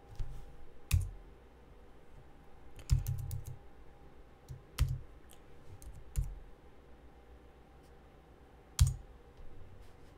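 Keystrokes on a computer keyboard, some perhaps mouse clicks, each with a dull knock: single taps spaced a second or more apart, and a quick run of several about three seconds in.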